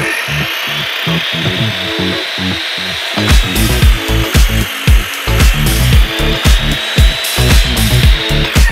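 An electric power tool running steadily on wood, a high whine over a noisy band, with background music with a steady beat underneath.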